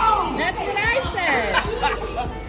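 Several people's voices chattering and calling out over each other, untranscribed.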